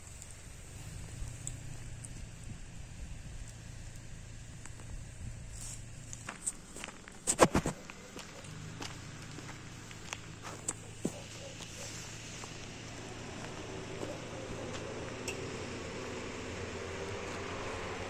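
Footsteps and brushing through dry forest undergrowth, with scattered small cracks and a short burst of sharp knocks about halfway through, the loudest sound. A faint low hum grows slowly in the last few seconds.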